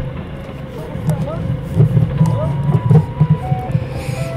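Forklift engine running, its low note swelling and easing unevenly as the lift handles the load during unloading.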